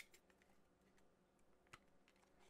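Near silence, with a sharp click right at the start and a faint tick later on: a plastic figure and its display base being handled as the figure's feet are fitted onto the base pegs.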